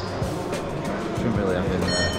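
Background music with indistinct talking under it.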